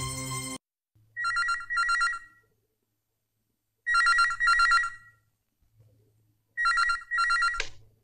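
Landline telephone ringing in double rings, three times, each ring a steady two-tone trill; the third ring is cut short as the receiver is lifted.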